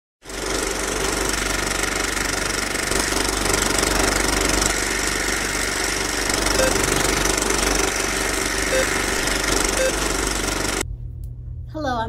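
Film projector sound effect accompanying an old film-leader countdown: a steady mechanical rattle and hiss with a few faint short blips, cut off suddenly near the end.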